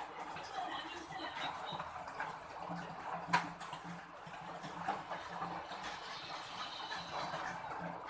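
Cat eating from a plastic bowl: irregular small chewing and smacking clicks, with one sharper click about three and a half seconds in.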